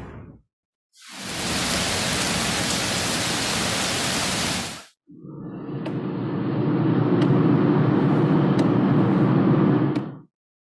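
Steady hissing noise in two stretches, each cut off abruptly, with short silences between them. The first stretch is an even hiss; the second is heavier and lower, with a few sharp clicks.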